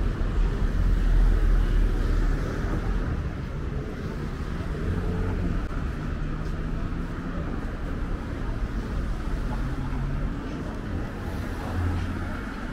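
Road traffic on a city street: cars driving past with a steady low engine and tyre rumble, loudest about a second in.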